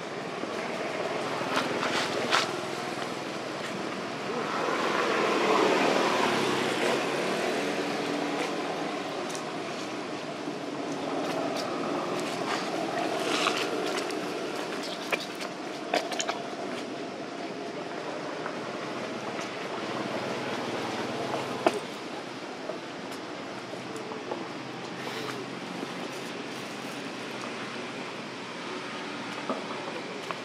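Steady outdoor background noise with a swell that builds and fades around five to seven seconds in, like a vehicle passing, and a few faint clicks scattered through.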